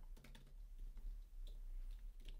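Faint typing on a computer keyboard: a scatter of soft, irregular key clicks.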